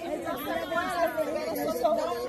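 Indistinct chatter of several women's voices talking over one another.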